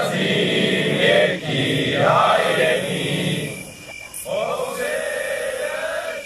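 A group of men chanting loudly in unison in long, held phrases, with a brief break about four seconds in.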